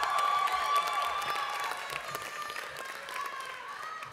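Audience applauding in a large hall, with voices calling out and cheering over the clapping; loudest in the first second, then dying down.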